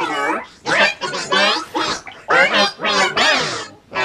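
A cartoon character's voice, Olive Oyl's, shouting angrily in short, quick bursts, pitch-shifted so that it warbles and is not intelligible as words.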